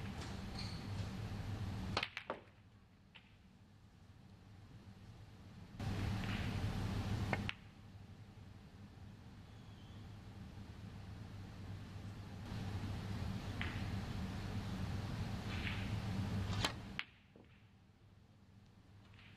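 Snooker balls clicking: three sharp clicks of the cue ball striking object balls during a break, about two seconds in, at seven and a half seconds, and near the end, over a steady low room hum.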